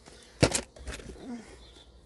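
Plastic VHS cassette cases knocking together as tapes are handled in a box: a short sharp clatter about half a second in, then lighter knocks.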